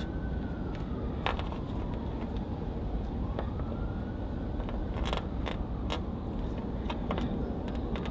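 A siren wailing faintly in a slow rise and fall, over a steady low background rumble, with a few sharp clicks.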